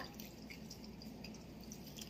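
Coconut milk being poured from a plastic cup onto grated cassava in a stainless steel bowl: a faint trickle with scattered drips.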